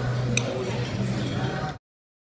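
Busy background noise with a steady low hum and a few sharp ticks, cutting off abruptly to silence near the end.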